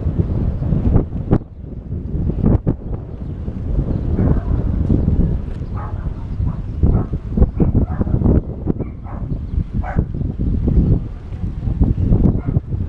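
Wind buffeting the microphone of a camera riding on a moving bicycle, a dense low rumble, with a few sharp knocks in the first three seconds as the bike rolls over the paving.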